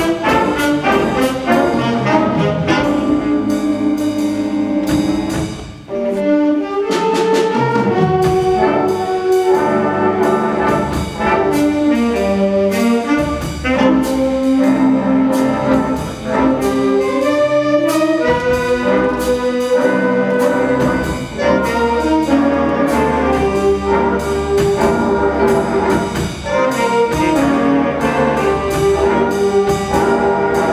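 Middle school jazz ensemble (big band) playing: saxophones, trumpets and trombones over piano and bass, with a steady beat. The music dips briefly about six seconds in.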